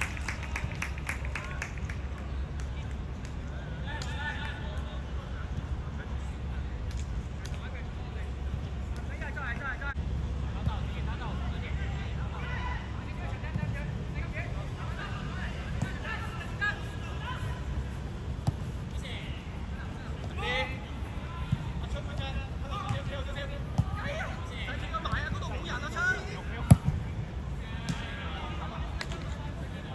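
Players' scattered shouts and calls across an outdoor football pitch over a steady low rumble, with one sharp thump near the end.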